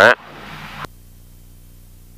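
A voice over the cockpit intercom ends at the start, followed by a hiss that cuts off abruptly just under a second in, like the intercom or radio squelch closing. After it, the single-engine plane's engine drones steadily and faintly in the background, muffled as heard through the headset intercom.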